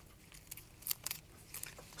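Faint scattered clicks and crackles of tape and a fabric strip being pressed and smoothed onto a plastic model skeleton by hand.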